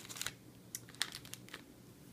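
Faint crinkling and a few light clicks of a cellophane wrapper on wax melts being handled and set down.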